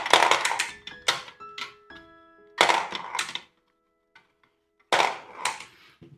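Marbles clicking and clattering against each other as they drop into a board game's marble dispenser, in several short bursts of clacks with pauses between.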